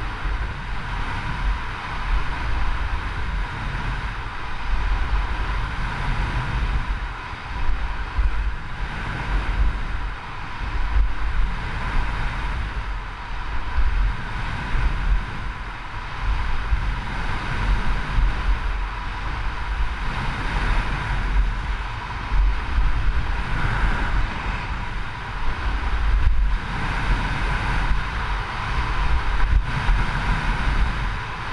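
Wind buffeting the microphone of a camera carried at speed down a ski slope, a low rumble that surges and eases, over the steady hiss of skis running on packed snow.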